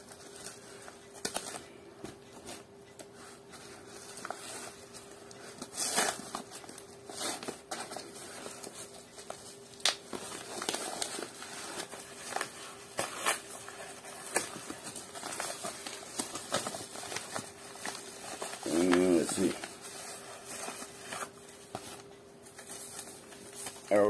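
Plastic mail packaging being handled and torn open by hand, crinkling in scattered rustles and sharp crackles. A brief murmured voice comes about three-quarters of the way through, over a faint steady hum.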